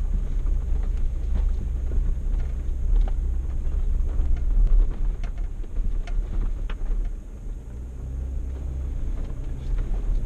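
Jeep driving on a rough dirt trail: a steady low engine and tyre rumble, with scattered sharp clicks and knocks as the vehicle jolts over the bumps. The rumble eases off briefly about seven seconds in.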